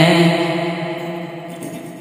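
A man's singing voice holding the last note of a line of an Urdu nazm, the note gradually dying away.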